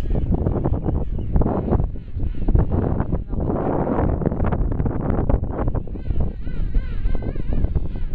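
King penguins calling in a colony, their calls wavering up and down in pitch and plainest in the second half, over strong wind rumbling on the microphone.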